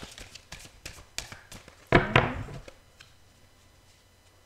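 Small gemstones clicking and tapping against each other as a hand rummages in a cloth pouch to draw one out. There are many quick ticks over the first two seconds, then a louder burst of rustling and clatter about two seconds in.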